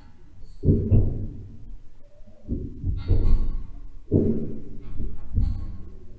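Electronic music played over the hall's loudspeakers, made of knocking sounds: four heavy, low, reverberant thumps with brighter, higher-pitched knocks among them. The higher copies come in delayed, which gives the sense of a big space.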